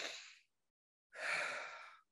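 A woman's deliberate breathing for a relaxation exercise: one breath fading out about half a second in, then a second long breath starting about a second in and tapering off.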